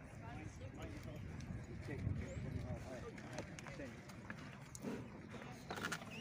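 Murmur of people talking nearby, with a few clopping hoof steps from racehorses being walked in.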